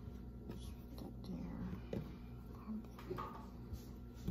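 Faint handling noise and soft scattered taps as pie-crust dough is pressed and patched into the dish by hand, over a steady low hum.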